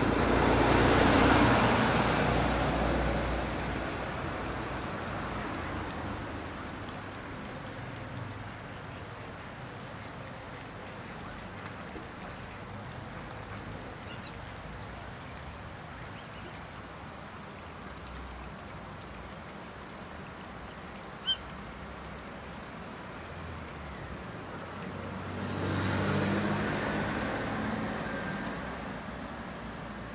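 Outdoor ambience at a waterfowl pond with a steady background noise, swelling louder at the start and again about 26 seconds in. A single short high call sounds about 21 seconds in.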